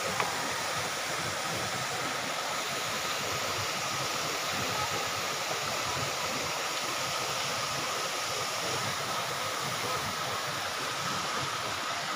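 Steady rushing of water flowing over rocks in a shallow mountain stream, an even noise that does not change.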